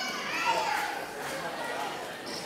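Indistinct voices calling out, with a steady background hum of a crowded hall.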